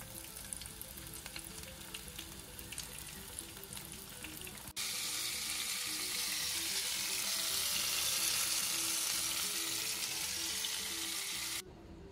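Flour-coated chicken kebab pieces shallow-frying in oil in a nonstick pan: a crackling sizzle, which turns louder and steadier about five seconds in as the pieces fry to golden brown. Soft background music runs underneath.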